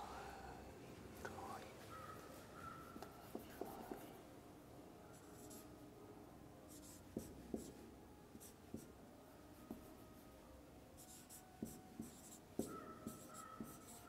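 Faint squeaks and light taps of a marker writing on a whiteboard, coming in short strokes with pauses between them.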